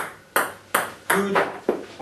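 Table tennis ball bouncing repeatedly in a steady rhythm, about three sharp pings a second.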